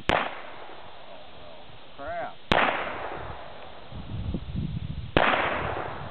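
Ruger Vaquero single-action revolver in .45 Colt fired three times, about two and a half seconds apart, each shot echoing off for about a second.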